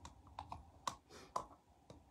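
Faint, irregular light clicks, about six in two seconds.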